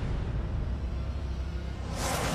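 Steady, dense rumbling wash of noise with deep bass and no clear notes: a dramatic sound effect under a TV drama's title graphics.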